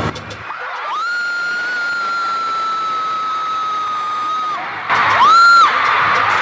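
A concert-goer's high-pitched scream close to the microphone, held for about three and a half seconds and sliding slightly down in pitch, over the noise of an arena crowd. A second, shorter scream rises and falls about five seconds in.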